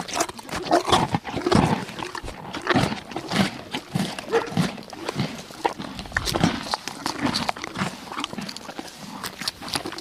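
Zebras calling: a run of short, barking calls one after another, with sharp clicks between them.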